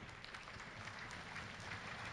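Faint audience applause, a steady patter of many hands clapping.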